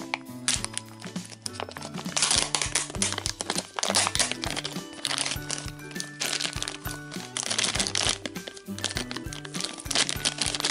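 Plastic packaging of a Num Noms Series 2 surprise pot crinkling in repeated bursts from about two seconds in, as the pot is pulled open and its yellow inner packet is handled, over steady background music.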